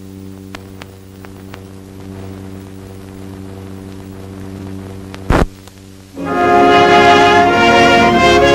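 Steady low hum and a few faint clicks from the film's soundtrack while the leader runs, with one loud pop about five seconds in. About a second later, orchestral music led by brass begins for the next segment's title.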